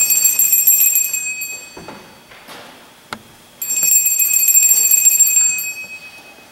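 A small metal bell struck twice, once at the start and again about three and a half seconds in; each stroke rings with a cluster of high tones for about two seconds before fading.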